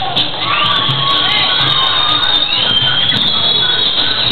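Crowd cheering and shouting, with long high-pitched yells, over dance music with a steady bass beat.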